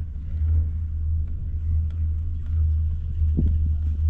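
Steady low rumble of a six-seat chairlift ride, the chair running along its haul rope, with a few faint light clicks.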